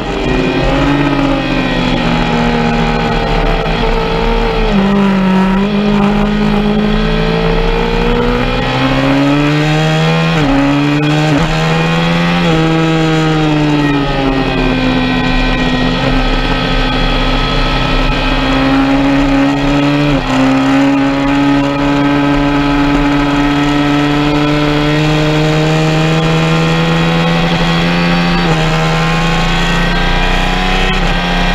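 Sport motorcycle engine heard from onboard at track speed. The revs fall and rise through corners around the middle, then climb slowly as the bike accelerates hard. A rush of wind noise runs underneath.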